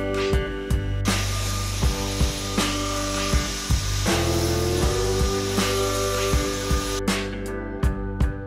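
Dyson cordless stick vacuum with a small nozzle running as it is passed over a freshly sanded, painted table top to pick up the sanding dust. It starts suddenly about a second in and cuts off about a second before the end, over background guitar music.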